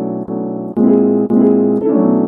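Chopped slices of a sampled piano loop played back in FL Studio's Fruity Slicer, triggered one after another and pitched down by about 400 cents. Each new chop cuts in abruptly, roughly every half second.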